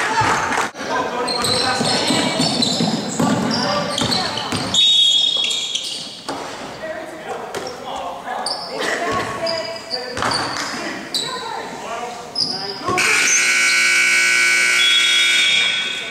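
Basketball game sounds, with players' voices, ball bounces and short high squeaks on a hardwood court. About thirteen seconds in, the gym's scoreboard buzzer sounds one long steady blast, marking the end of the quarter.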